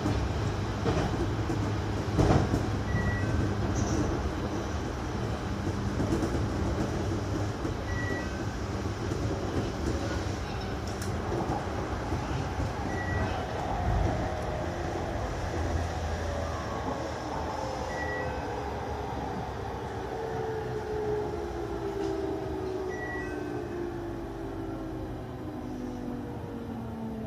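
JR Kyushu 813 series electric train rolling along the rails, with wheel-and-track rumble and rail-joint clicks, its inverter and traction-motor whine falling steadily in pitch in the second half as the train brakes into a station. A short two-note beep repeats about every five seconds.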